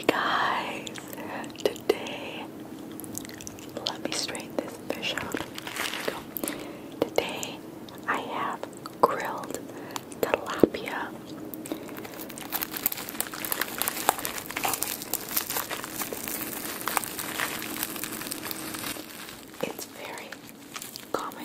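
Close-miked whispering, then fingers handling crisp lettuce leaves and picking at the skin of a salt-crusted grilled tilapia, heard as a dense run of fine crackles through the second half.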